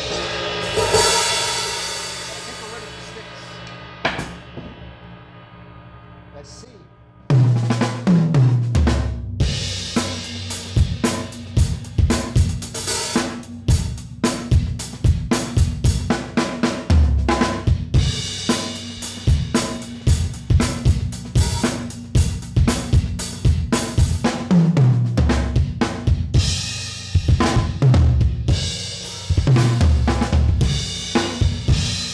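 Saluda Earthworks Hybrid cymbals ringing from a mallet roll and dying away over several seconds, with one more light hit midway. About seven seconds in, the full drum kit comes in played with sticks: bass drum, snare, toms and cymbals in a steady groove with tom fills, the cymbals newly broken in.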